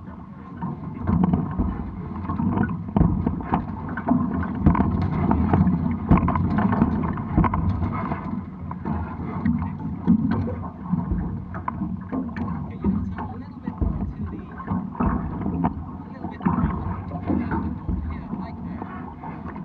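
Water splashing and slapping against the hulls of a Hobie 16 catamaran under sail, mixed with wind buffeting the microphone and irregular short knocks.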